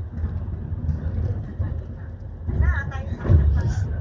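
Steady low rumble of a bus's engine and tyres at road speed, heard from inside the cabin, with voices talking over it and a louder stretch about two and a half to three and a half seconds in.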